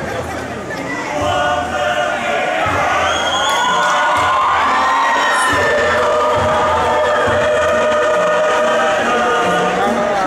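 A large choir singing in parts with long held notes, swelling about a second in, with cheering from the crowd mixed in; the recording is of poor quality.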